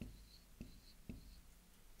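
Faint dry-erase marker writing numbers on a whiteboard: a few short strokes about half a second apart, with a thin squeak of the felt tip on the board.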